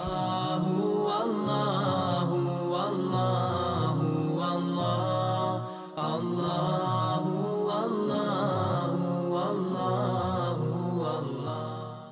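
Chanted vocal outro music: a wavering melodic line over a steady low held note, with a brief break about halfway through and a fade-out at the end.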